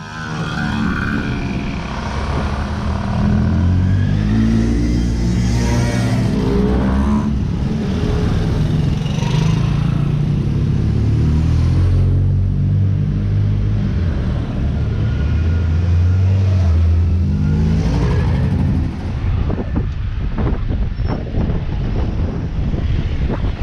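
A string of small motorbikes and a scooter riding past one after another, each engine note rising and falling in pitch as it comes up and goes by.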